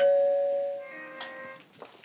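Electronic doorbell chime ringing a two-note ding-dong: a higher note, then a lower note about a second in, both dying away.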